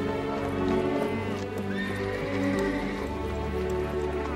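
Orchestral string music with horses: hooves clattering and a horse whinnying near the middle.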